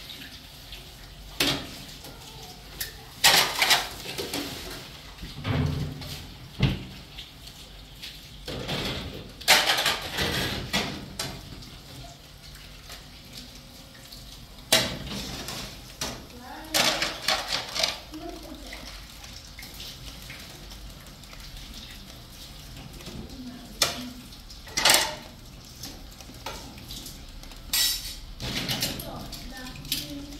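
Dishes being washed by hand at a kitchen sink: ceramic plates and cutlery clinking and clattering in irregular short bursts, with the tap running.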